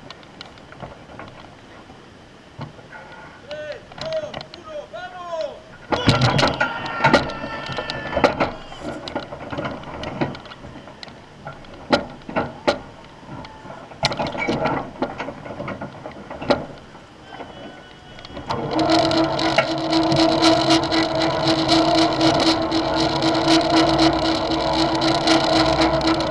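Scattered metallic knocks and clanks, then about two-thirds of the way through an electric winch motor starts and runs with a loud, steady hum, hauling the bungee jumper back up to the platform.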